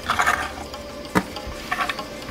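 Handling sounds as a slice of bread is put on a plate: a short rustle at the start, a sharp click about a second in, and another brief rustle near the end.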